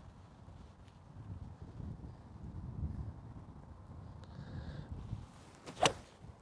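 A four iron strikes a golf ball once, a single sharp crack near the end. The golfer says the shot was hit really well. Before it, a low wind rumble on the microphone.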